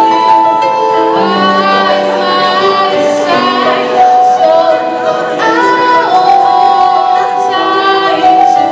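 A woman singing a pop ballad live into a microphone over sustained electronic keyboard chords, with long held notes.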